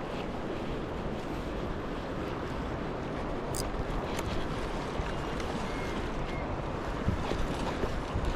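Steady wind noise on the microphone over flowing river water, with a few faint ticks.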